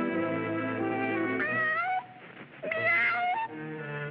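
Orchestral cartoon score with sustained chords, then two rising, drawn-out cartoon-cat meows in the second half.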